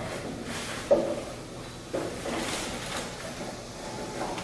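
Janggu, Korean hourglass drums, being hurriedly lifted and strapped on: knocks and clatter from the drum bodies and straps amid hanbok fabric rustling, with sudden bumps about a second and about two seconds in.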